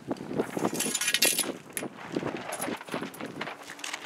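Plastic tarp rustling and crinkling as it is handled and pulled up on its ropes and pole, loudest near the start, with a run of irregular scuffs and knocks.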